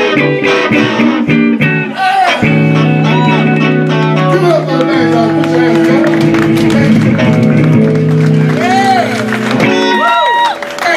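Two electric guitars playing slow blues, bent lead notes over held chords, with the playing stopping just before the end.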